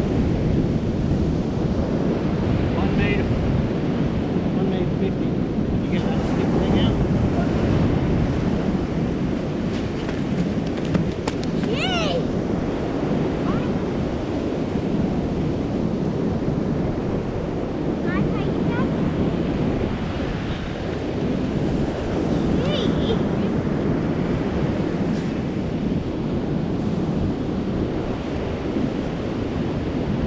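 Steady wind buffeting the microphone over surf breaking on an open ocean beach. A few brief high gliding sounds cut through about twelve and eighteen seconds in.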